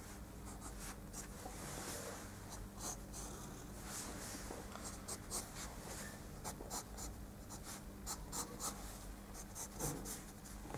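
Pencil sketching on paper: quick, irregular scratchy strokes as the outline is firmed up, over a faint steady low hum.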